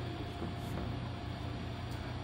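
Low, steady background hiss with a faint hum, and no clear event standing out.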